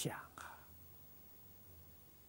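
The last syllable of an elderly man's Mandarin speech, then a faint breathy trailing sound about half a second in. After that, quiet room tone with a low steady hum.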